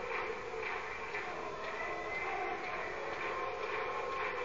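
Steady crowd noise from a large audience, an even din with no single voice or event standing out.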